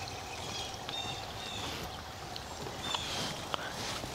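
Steady rushing background noise in a garden, with a few faint, short high chirps and light clicks over it.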